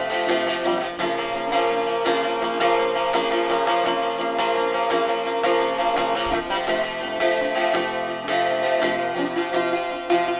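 Sharkija, a long-necked Balkan lute, played solo: a quick, continuous run of plucked notes over steady ringing tones.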